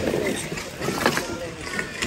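Gloved hands rummaging through a bin of mixed secondhand goods: fabric and plastic rustling, with a few small knocks as items are moved.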